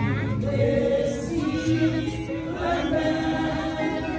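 Women's church choir singing a hymn together, several voices holding long notes.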